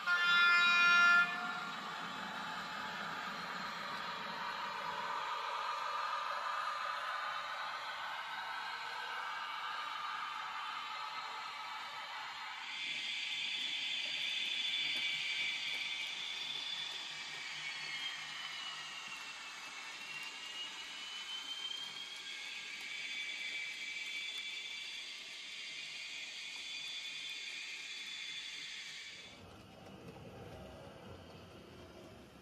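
N-scale model trains running on a layout: a brief loud horn-like tone at the start, then the steady rolling and motor noise of the model locomotives and wheels on the track. From about 13 s in, a higher whine takes over, and its pitch dips and then rises again.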